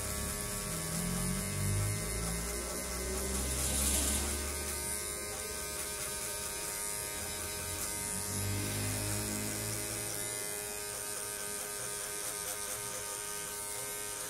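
Electric hair clippers running with a steady hum while cutting an arched guide line into short hair at the side and nape.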